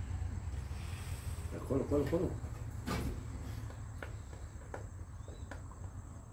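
A steady low hum with a brief spoken murmur about two seconds in, then a few light sharp clicks or taps spaced about a second apart.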